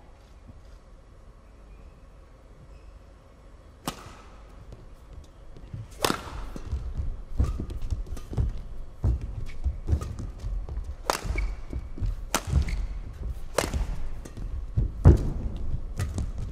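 Badminton rally: a racket strikes the shuttlecock sharply with the serve about four seconds in, then from about six seconds on the racket hits come roughly once a second. The players' feet thud on the court between strokes.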